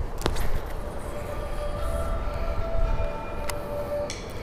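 Low rumble of the camera being handled, with wind on the microphone and a sharp clack shortly after the start. From about two seconds in, a steady chord of several held tones joins and lasts to the end, like a distant siren.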